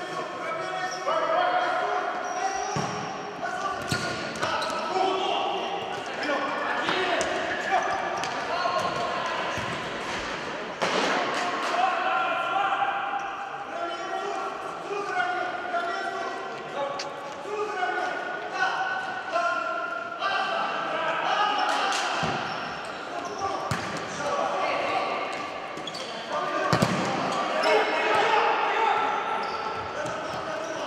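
Futsal players shouting and calling to each other, echoing in a large sports hall, with several sharp thuds of the ball being kicked.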